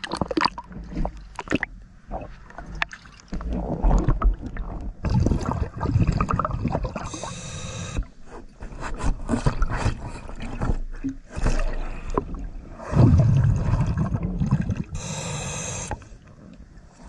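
Diver breathing through a regulator underwater: a long rumbling gurgle of exhaled bubbles followed by a short high hiss of inhalation, twice. Sharp knocks and splashes in the first couple of seconds as he goes under.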